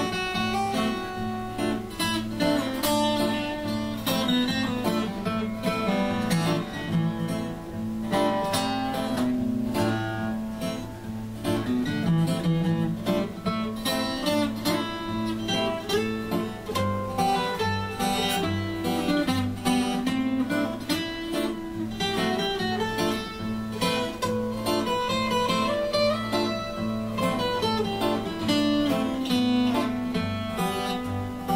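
Two acoustic guitars, one of them a Taylor 214ce, one strumming the chords while the other plays an instrumental lead solo of picked note runs.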